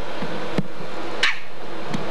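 Steady hiss of an old camcorder tape recording, with a single click about half a second in and a brief hissing noise a little past a second.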